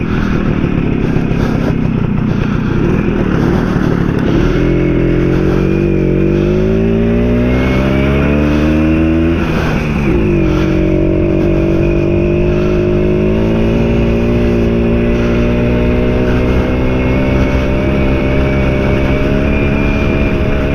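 A 1952 BSA Bantam's small single-cylinder two-stroke engine pulling the motorcycle along the road, with wind on the microphone. The engine note rises steadily as the bike accelerates, drops with a gear change about ten seconds in, then runs evenly in the higher gear, rising slightly.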